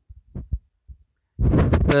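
A man's speaking voice during a pause: a few faint mouth sounds and soft low thumps, then a loud, held hesitation sound, 'uh', starting near the end.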